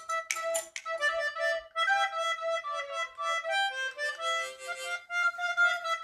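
Harmonica playing a run of held notes and chords, several notes sounding at once as the tune moves.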